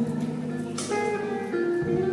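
Live band accompaniment with no voice: a guitar plays over held chords, the notes shifting about a second and a half in.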